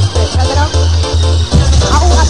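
Early-1990s rave DJ mix: electronic dance music with a heavy pulsing bass line under a melodic synth riff.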